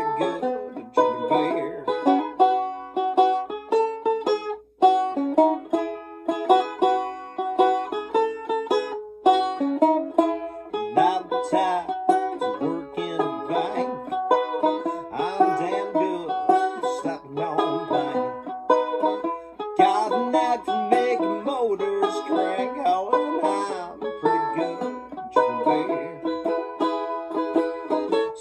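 Banjo played solo: a steady, busy run of plucked notes and chords with no singing, broken by a brief pause about five seconds in.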